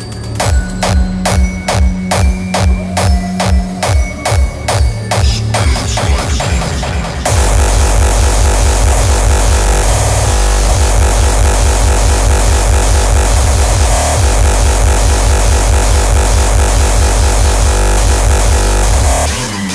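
Terrorcore from a DJ set, loud. Distorted kick drums strike about three times a second and quicken into a roll. About seven seconds in, the full track drops in as a dense distorted wall over a pounding kick.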